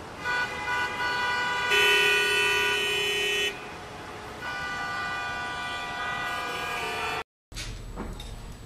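Car horns honking in two long, steady blasts of about three seconds each, the first swelling louder as a second horn joins about two seconds in. The sound cuts out abruptly just before the end.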